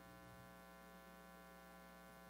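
Near silence with a faint, steady electrical mains hum carrying many even overtones.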